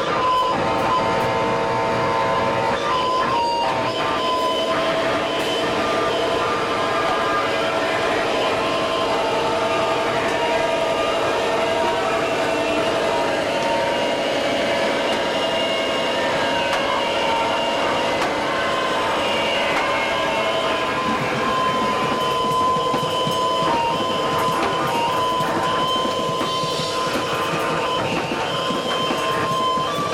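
A live noise-rock duo: heavily distorted electric guitar noise and amplifier feedback with drums, a dense, loud wall of sound. Held whining tones run through it, with a high whine coming back about two-thirds of the way in.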